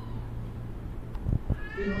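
A high, wavering cry near the end, over a steady low electrical hum, with two dull thumps just before it.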